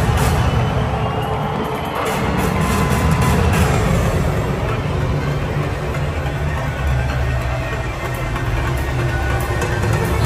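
Music played loud over a football stadium's public-address system during the pre-match line-up, with a heavy, steady bass.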